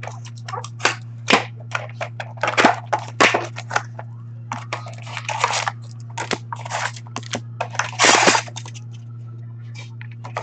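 Hobby box of Upper Deck Ice hockey cards being opened and its foil packs handled: a run of sharp cardboard snaps and clicks, with longer crinkling rustles of foil wrappers a few times, over a steady low hum.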